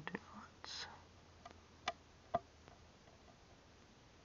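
A quiet room with handling noise: a short breathy rush just under a second in, then two sharp clicks about half a second apart near the middle, from holding and steadying the paper instruction sheet in front of the camera.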